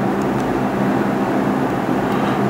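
Steady background hum and hiss with a low, even drone; no distinct events.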